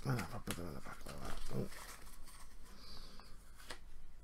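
A man's low, murmured voice with faint clicks and rustles of playing cards being handled.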